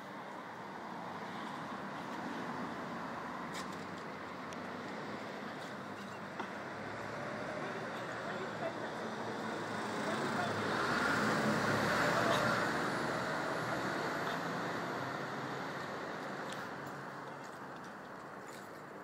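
Road traffic: a vehicle passes close by, swelling to its loudest about halfway through and then fading away, over steady street noise.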